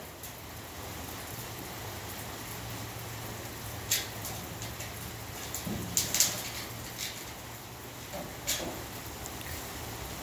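A dog's claws clicking and scraping a handful of times on a metal picnic table and bench as it climbs down from the tabletop, over a steady hiss of light rain.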